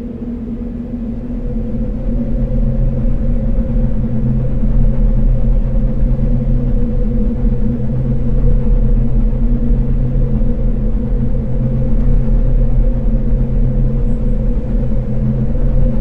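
A deep, steady rumbling hum with several held low tones, swelling over the first few seconds and then holding level.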